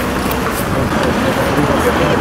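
Steady city street noise with road traffic, and indistinct voices in the background.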